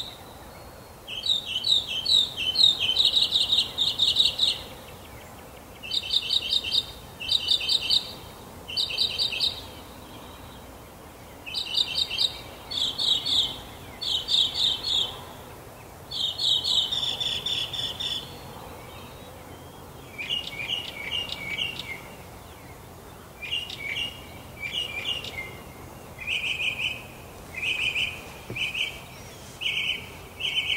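Songbirds singing in repeated short phrases of rapid chirping notes, each phrase a second or two long with brief pauses between. From about twenty seconds in the phrases sit lower in pitch and come in quicker succession.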